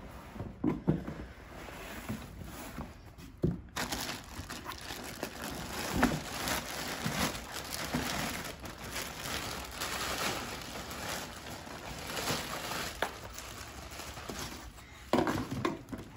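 A few soft knocks from a cardboard box being opened in the first few seconds, then a clear plastic packaging bag crinkling and rustling continuously as hands pull a catcher's chest protector out of it.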